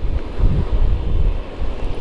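Wind buffeting the microphone of a rider on a moving motor scooter (a Yamaha NMAX): a loud, low, gusty rumble that rises and falls, with road and vehicle noise mixed in.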